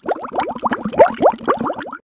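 Bubbling sound effect: a quick run of rising bloops, several a second, the loudest about a second in.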